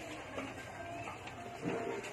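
Steady market-stall background noise, with a handful of eggplants being picked over and handled close by and a brief louder knock about one and a half seconds in.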